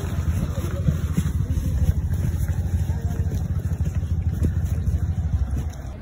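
Loud, fluttering low rumble of wind buffeting a phone microphone while walking outdoors. It cuts off abruptly near the end.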